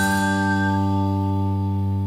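Music from a TV commercial-break bumper jingle: a long held chord ringing out and slowly fading, with a high whistle-like note on top that fades out about a second in.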